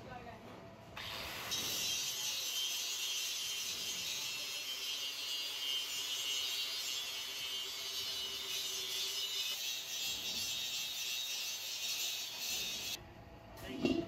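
Angle grinder grinding down the welded seams inside an iron sheet pan (karahi): a steady, high, hissing grind that starts about a second and a half in and cuts off about a second before the end.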